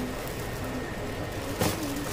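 A brief rustle of a plastic bag near the end, over a low steady background hiss.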